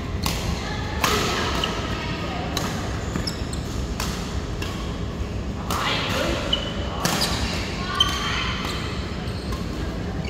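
Badminton rackets striking a shuttlecock in a doubles rally, sharp hits about every second or so, ringing in a large hall.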